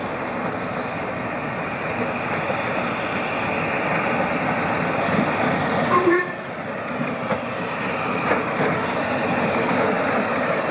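Narrow-gauge steam locomotive running toward the listener, its running noise building steadily. There is a brief dip with a few short tones about six seconds in.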